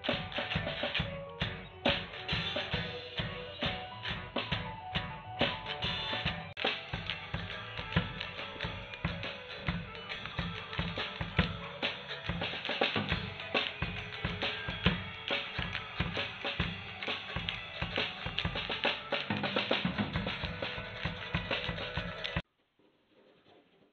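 Hard rock band playing: a steady drum-kit beat with bass drum and snare, under electric guitars and bass.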